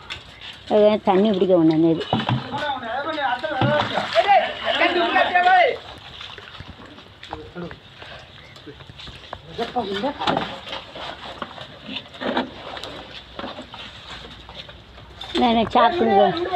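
People talking for the first few seconds and again near the end, with a quieter stretch of faint voices and a few short knocks in between.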